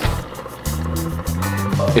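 Red rotating beacon light running after being plugged in: the small electric motor inside turns the reflector with a low, steady whir while the bulb stays dark. Background music plays along with it.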